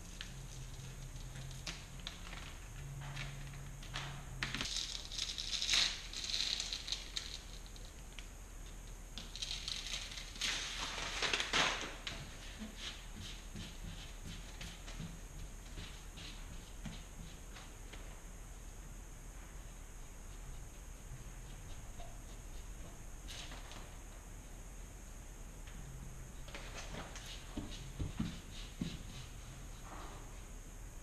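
Transfer paper being peeled off a vinyl decal on a sheetrock wall and rubbed down by hand: a few bursts of paper rustling and crinkling, the loudest about ten seconds in, over a faint steady hum.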